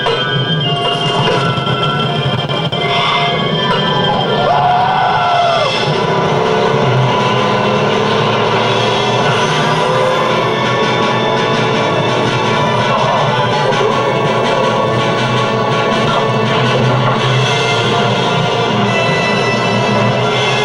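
Music playing steadily.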